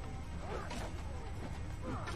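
Soundtrack of a TV action scene: a music score over a steady low rumble, with scattered short effects.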